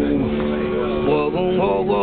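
A self-built one-string cello sounding a steady low drone, joined about a second in by a man's voice singing wavering, chant-like notes.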